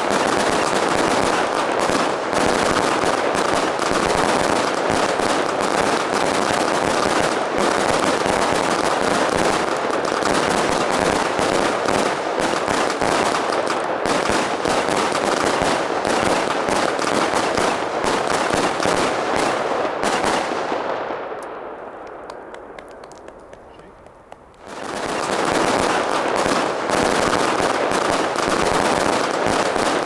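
Ten Helios Reno consumer firework batteries, each lit at both fuses, firing together: a dense, unbroken run of launches and crackling bursts. About twenty seconds in it dies away over a few seconds, the high end going first, then starts again at full level about twenty-five seconds in.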